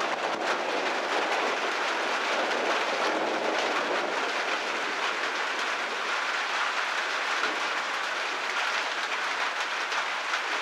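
Steady rain falling during a thunderstorm: an even, unbroken hiss with no thunderclap.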